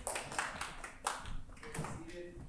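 A few scattered hand claps from a small congregation, short sharp claps at irregular intervals.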